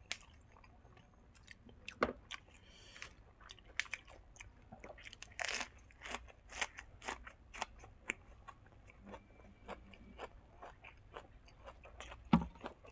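A person chewing and crunching crisp fresh greens, with many irregular crisp crunches and one louder crunch about halfway through.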